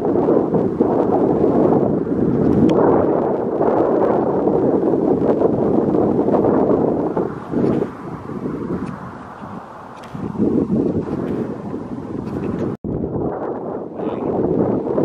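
Wind buffeting the microphone, a gusty rushing noise that eases off for a couple of seconds in the middle and cuts out for an instant near the end.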